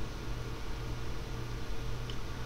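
Steady low hum with an even hiss beneath it, unchanging throughout: background room tone.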